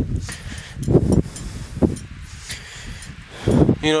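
Wind buffeting the microphone outdoors: irregular low rumbling gusts about once a second, under a faint hiss. A man's voice starts right at the end.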